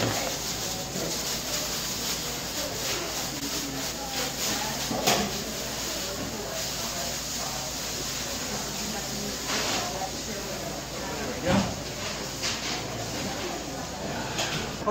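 Plastic bag rustling and crinkling as crushed Oreo cookies are shaken out of it into a galvanized metal trash can, with a few louder rustles and knocks.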